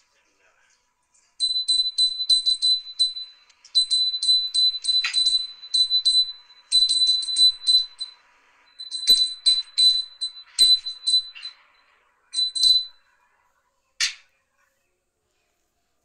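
Hand bell rung for the arati in a series of short bursts of rapid strokes, its high-pitched ring steady between strokes. It stops near the end, and one short sharp sound follows.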